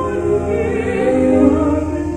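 An opera chorus singing sustained, held notes together in a live recording, swelling a little about a second and a half in.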